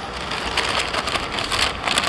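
Paper takeaway bag rustling and crinkling as a hand rummages inside it, with louder crackles about half a second in and near the end.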